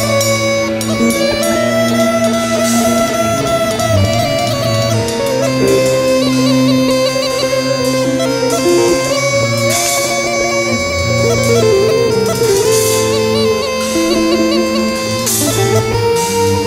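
Bulgarian gaida (bagpipe) playing a melody over a low bass line that moves from note to note, with guitar in the band.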